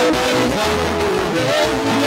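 Live worship band music with voices singing over keyboard, bass and drums, loud and steady.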